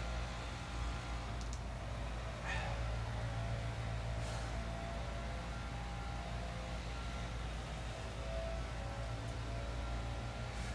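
Steady low background hum with a few faint ticks, and no speech.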